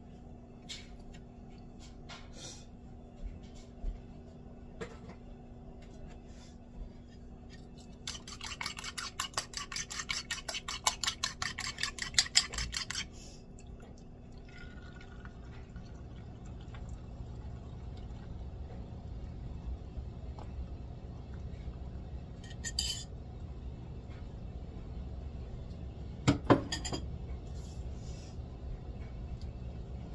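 A fork beating eggs in a bowl, a fast run of clinks lasting about five seconds, then the eggs poured into an oiled cast-iron skillet. A few fork taps on the pan near the end, over a faint steady hum.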